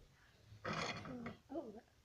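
A boy's loud wordless vocal sound, a rough exclamation of about half a second, followed by a shorter voiced sound.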